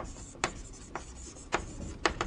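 Writing on a board: a few sharp taps as the strokes land, the clearest about half a second and a second and a half in, with a faint scratchy hiss between them.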